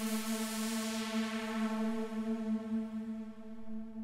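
A single held note of a detuned supersaw pad in the Serum software synth, its low-pass filter cutoff and resonance swept by a macro knob. The top end darkens through the middle of the note and opens up again near the end.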